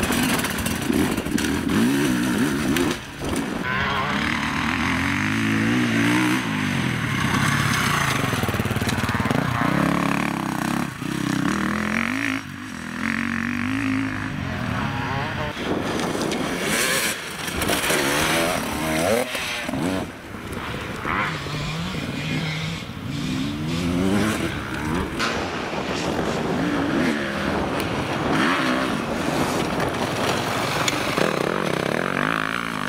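Enduro dirt bike engines revving hard on rocky trail sections, their pitch rising and falling over and over as the riders work the throttle, with short drops between bursts.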